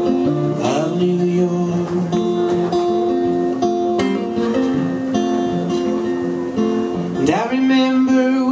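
Electric guitar played solo through an amplifier, strummed chords ringing and changing in a steady pattern in an instrumental stretch between sung lines, with a voice gliding up into a sung note near the end.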